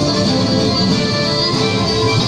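Southern Italian folk dance music, a tammuriata or pizzica, played on plucked strings and fiddle at a steady level.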